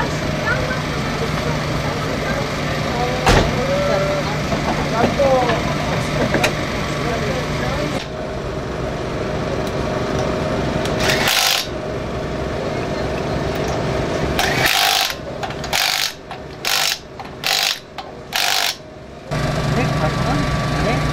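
Pneumatic impact wrench on the car's wheel nuts: one burst about halfway through, then five short bursts in quick succession near the end. Under it runs a steady service-area hum and background voices.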